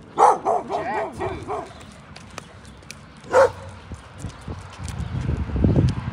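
A small dog barking: a sharp bark, then a quick run of high yips that waver up and down in pitch, and another single bark a little over three seconds in. A low rumble builds toward the end.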